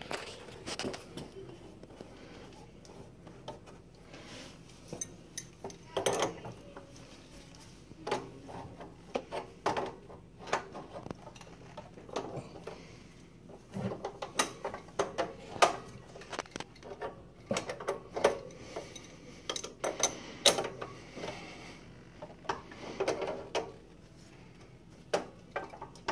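Metal tools clicking and clinking against pipe fittings as compression nuts on service valves are tightened onto copper pipes with grips and a spanner, squeezing the olives to make the joints. Irregular short clicks and knocks, with scrapes between them.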